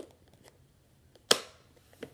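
Two sharp clicks about a second apart, the second louder with a short ring after it, with near quiet between them.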